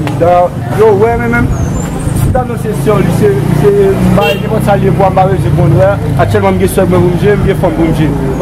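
A man talking, over a steady low rumble.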